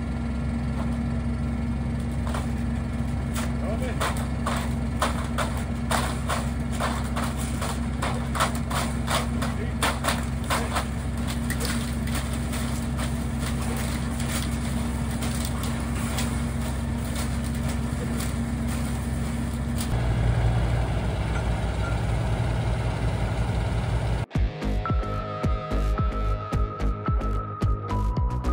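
A geothermal borehole drilling rig's engine runs steadily, with a string of metallic clanks and knocks from the drill rods and pipes being handled. The engine note shifts to a lower throb about 20 seconds in. Near the end it cuts off abruptly and music takes over.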